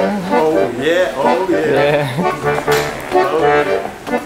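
Bayan (Russian button accordion) playing held chords over steady bass notes, with a man singing along to it.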